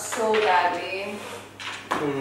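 A woman speaking, with a single sharp knock just before the end.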